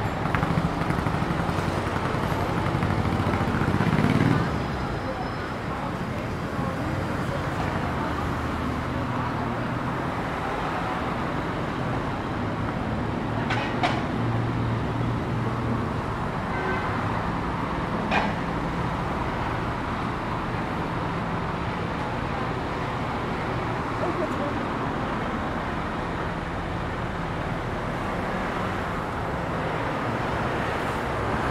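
Road traffic on a city street. A lorry and a motorcycle pass close by, their engine hum loudest in the first four seconds, then a steady wash of passing cars with two sharp clicks around the middle.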